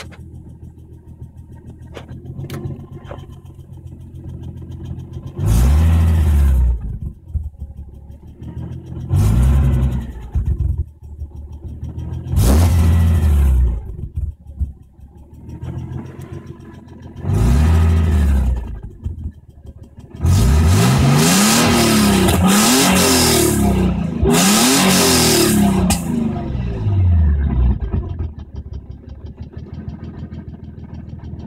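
Nissan 300ZX (Z32) V6 engine idling, heard from inside the cabin, blipped four times with short revs. It is then revved repeatedly for about six seconds, the revs rising and falling several times before it settles back to idle.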